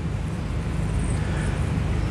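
Steady background noise with a low hum underneath, and no voice.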